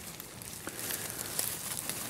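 Dry fallen leaves rustling and crackling under hands pressing into a leaf-capped compost heap around a probe thermometer, with many small irregular crackles.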